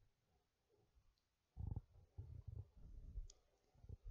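Near silence: quiet room tone, broken by a few faint low thumps in the second half and one soft click.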